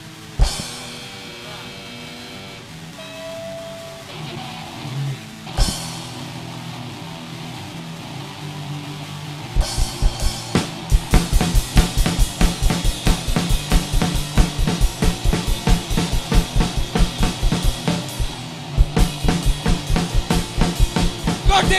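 Rock band of drum kit, electric bass and electric guitar rehearsing: two loud hits that ring on over held notes, then, about halfway through, the drums break into a fast, steady beat with the bass and guitar playing along.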